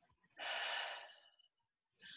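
A person's slow, deliberate breath out through the mouth, the out-breath of a guided deep-breathing exercise. It starts about half a second in and fades within about a second.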